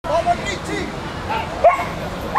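A dog barking and yipping in short, excited calls, the loudest about one and a half seconds in, with people's voices in the background.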